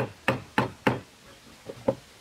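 Hammer striking a wood chisel cutting into timber: four quick blows about a third of a second apart, then two lighter taps near the end.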